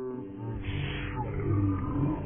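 A woman's singing breaks off about half a second in and gives way to a deep, drawn-out roar that grows louder: her vomiting, slowed down to match slow-motion footage.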